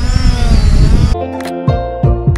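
Hubsan Zino quadcopter's propellers whining with shifting pitch over a noisy rush for about a second, then an abrupt cut to background music with held notes and sharp beats.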